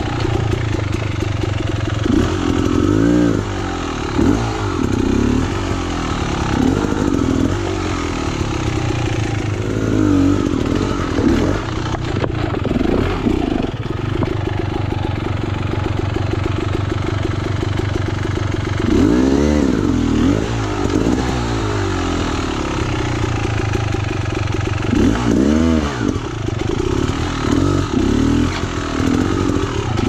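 Beta X-Trainer two-stroke enduro motorcycle engine running at low speed through a rock garden, with repeated short throttle blips that rise and fall in pitch, in clusters throughout.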